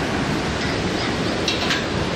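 Steady rushing noise of river water flowing below the bridge, with a couple of brief faint high chirps about one and a half seconds in.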